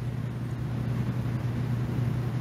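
A steady low hum with faint hiss: background noise with no distinct event.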